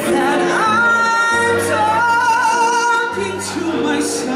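Live ballad: a male singer holds long notes with vibrato over keyboard and electric bass accompaniment.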